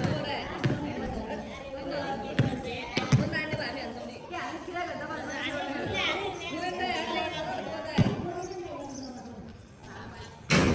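A basketball bouncing on a paved court during a pickup game: a handful of irregular dull thuds, with players' voices calling out throughout.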